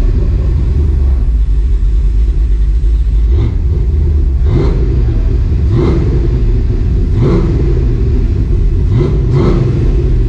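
Dodge Dakota R/T's cammed 5.9L Magnum V8 idling with a steady low rumble, blipped up in short revs about five times and settling back each time. It is running on a freshly loaded tune that is running rich at idle.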